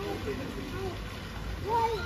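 Faint voices of people in a swimming pool over a low steady rumble, with water sloshing softly as the swimmers move.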